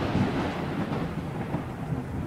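Intro sound effect: a low, rumbling wash of noise that slowly dies away.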